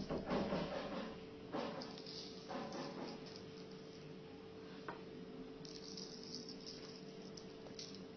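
Common salt sprinkled by hand onto paper and wet glue: faint, grainy rustling in a few short spells over the first three seconds, then quieter, with a soft hiss later on. A faint steady hum runs underneath.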